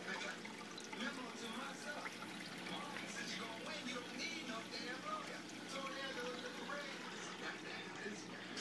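Water pouring and trickling into a reef aquarium's sump below the tank, running steadily, with voices in the background.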